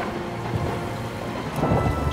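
Storm at sea: heavy rain pouring down with strong wind and a low rumble of thunder.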